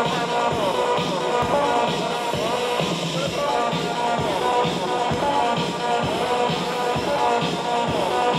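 Electro dance music with a steady kick-drum beat and a synth melody that slides up and down in pitch.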